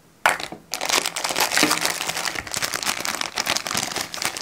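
Clear plastic bag crinkling and crackling as it is handled around a strip of adhesive bandage, starting sharply about a quarter of a second in.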